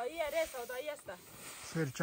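A person talking in short phrases over a soft hiss of wheat grain sliding as it is tossed with a wooden shovel and swept with a broom.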